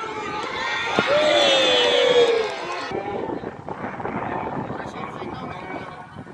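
Football spectators' voices: a sharp knock about a second in, then one long drawn-out shout that falls slightly in pitch, followed by a lower murmur of crowd chatter.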